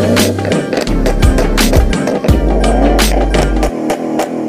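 Punjabi rap song's beat with no vocal line: long, deep bass notes under a fast pattern of sharp percussion hits, with a wavering melody in the middle range. The bass drops out just before the end.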